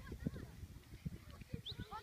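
Children calling out in the distance while playing football, with irregular low thumps throughout.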